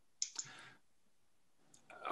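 Two faint sharp clicks a little way in, trailing into a brief soft hiss, then near silence.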